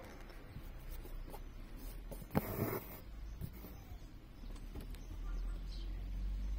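Embroidery needle and stranded cotton thread being pulled through taut, heavy unbleached cotton canvas in a hoop while working buttonhole stitch. A sharp click a little past two seconds in, then about half a second of rasping as the thread draws through the cloth, with faint ticks of needle and fingers on the fabric.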